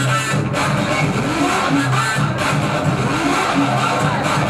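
Loud recorded dance music playing, with a low note that slides up and down over and over, about once a second.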